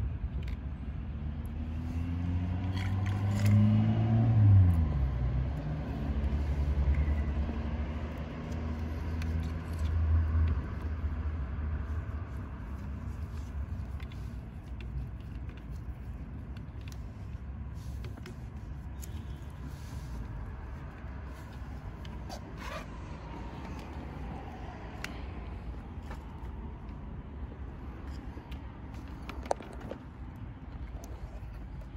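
A motor running with a low hum that dips in pitch about four seconds in and fades after about ten seconds, leaving a fainter steady hum with small clicks and scrapes of hoses being handled.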